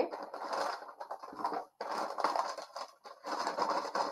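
Rustling and scraping of a baby-wipes pack as a wipe is pulled out, in three stretches with short breaks between.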